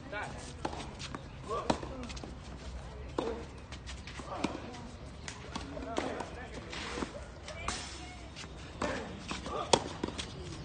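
Tennis balls struck by rackets in a baseline rally on a clay court: sharp pops of racket on ball every second or two, with the bounces in between. The loudest hit comes near the end.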